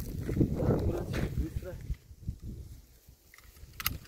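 Faint, indistinct talk and rustling handling noise in the first half, then quieter, with two sharp clicks in quick succession near the end.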